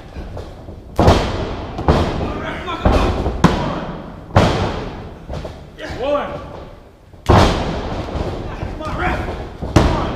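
Hard thuds and slaps on a wrestling ring's canvas mat, three about a second apart early on, more soon after, and a loud one past the middle, each ringing on briefly, as the referee slaps the mat counting pin attempts. Shouted voices come between the impacts.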